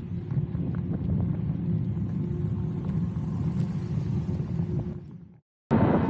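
Steady low rumble of wind and road noise on a camera riding along on a moving road bike, with a faint steady hum. It fades out and drops to silence for a moment near the end, then comes back.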